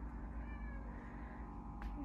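A house cat meowing faintly once, a short falling call, over a steady low hum.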